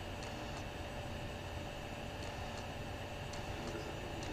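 Steady low background hiss with a faint constant hum and a few faint, scattered ticks.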